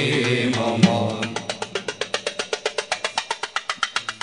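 Male voices chanting an inshad, the held line ending about a second in. Then a fast, even train of light, sharp percussion taps, about eight a second.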